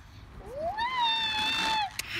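A child's high-pitched squeal that glides up about half a second in and is held for over a second.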